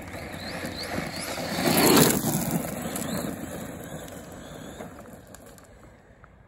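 Arrma Big Rock 3S RC monster truck on gravel: its brushless electric motor whines up in short throttle blips while the tyres crunch over the gravel. The sound is loudest about two seconds in, then fades away.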